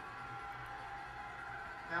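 Faint, steady background sound of a televised football broadcast played through a TV's speakers, with a low hum under it.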